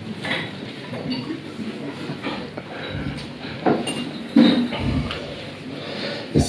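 Scattered light clinks and knocks, with a louder bump about four and a half seconds in.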